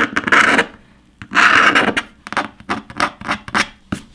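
Utility knife blade scraping lines through the paint on a Surface Pro 6's metal back panel. Two longer strokes are followed by a quick run of short scratches.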